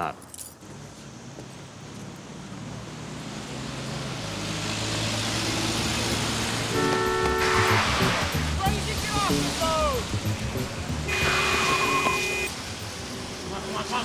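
Street traffic: car engines and tyres on wet road, swelling as cars pass close by. A car horn honks with a steady held tone about seven seconds in and again about eleven seconds in.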